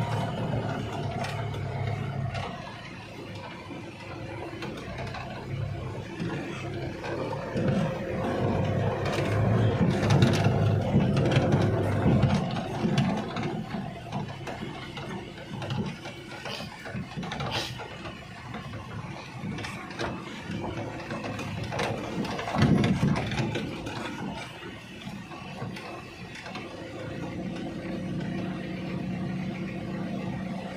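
Mitsubishi L300 pickup's engine running, heard from inside the cab on a rough dirt road, with cab rattles and a few sharp knocks as it jolts over bumps. The engine gets louder about a third of the way in, then eases off.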